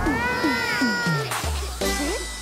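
Closing sound effects of an animated children's song: four quick cries that slide down in pitch, then a low burst about a second and a half in and a short rising blip near the end.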